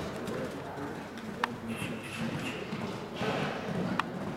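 Horse's hoofbeats on the sand footing of an indoor arena, with voices in the hall behind them.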